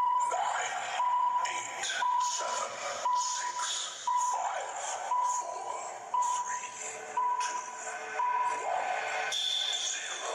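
Countdown timer sound effect: a short electronic beep on one steady pitch, once a second, ten times, over background music.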